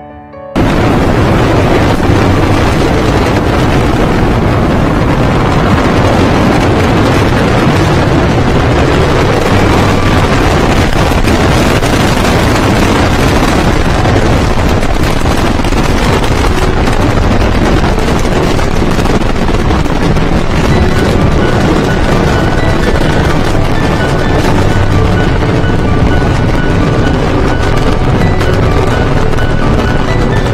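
Falcon 9 rocket launch: the noise of its first-stage engines cuts in abruptly about half a second in and then holds as a loud, steady rumble, with music faintly underneath.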